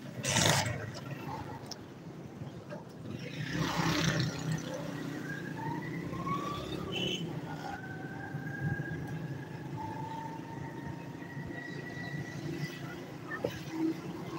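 Road traffic rumble with a vehicle's whine rising slowly in pitch for several seconds in the middle. A loud bump comes about half a second in, and a rush of noise a few seconds later.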